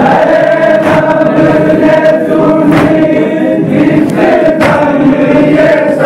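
A group of voices chanting a noha, a Shia lament, in unison on long held notes. A sharp slap comes about every two seconds, the beat of the chest-beating matam.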